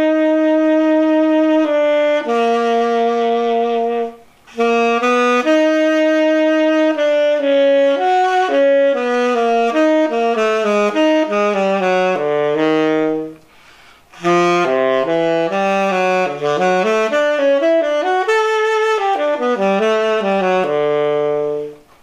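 Tenor saxophone played on a Vandoren T35 V5 mouthpiece: long held notes at first, then quicker runs stepping down and back up. There are short breaks for breath about four seconds in and again just past the middle.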